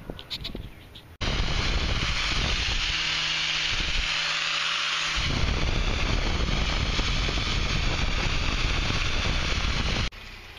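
Electric sharpening machine running steadily with a loud grinding hiss, switching on abruptly about a second in.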